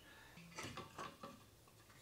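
Faint clicks and knocks of an old Husqvarna chainsaw being taken hold of and handled on the bench, a few light taps in the first half.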